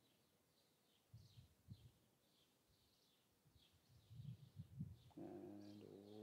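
Near silence outdoors, with faint small bird chirps repeating throughout and a few soft low rumbles.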